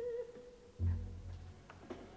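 Opera performance: a soprano's held note with wide vibrato ends just after the start. About a second in, a soft low orchestral chord enters and fades, leaving quiet sustained accompaniment.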